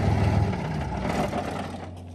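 Straight-piped Rolls-Royce engine of an FV433 Abbot self-propelled gun running hard, then dying away from about half a second in as it stalls.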